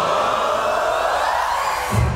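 A large group of voices sounding together in one slow upward vocal slide, like a choir warming up, cut off suddenly near the end.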